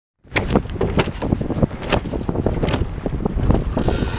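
Wind buffeting the microphone aboard a sailboat under sail: a heavy, gusty rumble with frequent irregular pops, starting a moment in.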